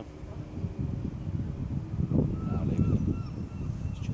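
Wind buffeting the microphone in irregular gusts, loudest around the middle, with four short high chirps just after halfway.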